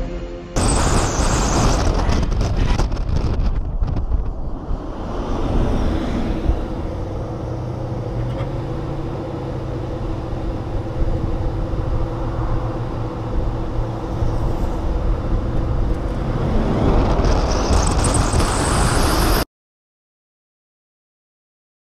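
Heavy wind buffeting and road noise on a camera mounted on the outside of a Tesla Model S 100D accelerating hard down a highway in a drag race. The noise starts about half a second in and cuts off suddenly near the end.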